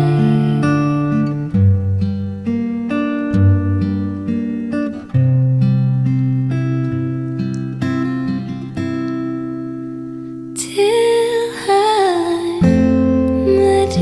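Acoustic guitar playing a slow picked instrumental passage of a ballad, single notes changing about every half second. Near 11 s a voice briefly sings a wavering held line, and from about 13 s the guitar moves to fuller strummed chords.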